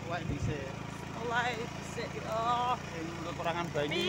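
Short bursts of a person's voice, three brief phrases, over a steady low hum.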